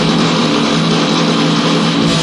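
Live thrash metal band's distorted electric guitars holding a steady droning chord with no drum hits. The lowest end thins out briefly about a second in.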